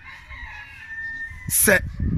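A rooster crowing: one long held call lasting about a second, followed by a short, louder sound near the end.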